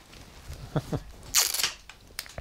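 Guitar patch cables being unplugged and an effects pedal handled on a wooden table: a few short clicks and knocks, then a louder short hiss about one and a half seconds in.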